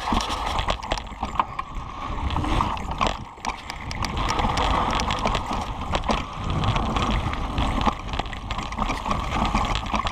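Kona Process 134 mountain bike riding down a dry, rocky dirt trail: tyres rolling and crunching over dirt and stones, with the bike clattering over bumps in frequent sharp knocks and clicks, over a steady rumble.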